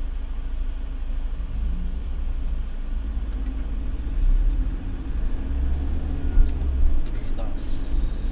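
Steady low rumble of a moving minibus heard inside its passenger cabin: engine and road noise, with a couple of brief bumps late on.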